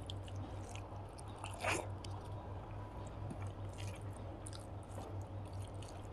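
Fingers mixing plain rice with dal curry and okra fry on a plate, a run of small wet squishes and clicks, with one louder one just under two seconds in. A low steady hum runs underneath.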